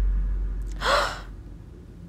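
A girl's short, sharp gasp about a second in, a gasp of sudden realization.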